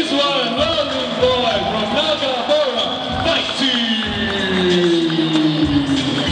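A man's voice announcing the winner of a kickboxing bout, the last word drawn out into one long, slowly falling call.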